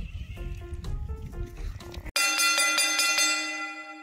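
Light background music over a low rumble, cut off about halfway through by a bright bell-like ringing, struck rapidly several times and then ringing away. It is the quiz's time-up signal.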